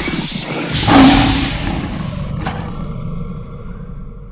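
Cinematic logo-intro sound effect: a whooshing rumble that swells to its loudest about a second in, with a sharp hit near the middle, then a long fade.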